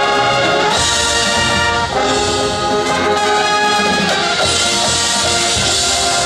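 Marching band playing, the brass section holding loud sustained chords that change about every second or two over the percussion. Bright crashes come about a second in, at two seconds, and again around four and a half seconds.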